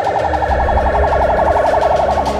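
Police vehicle siren sounding a fast warble, its pitch rising and falling about ten times a second.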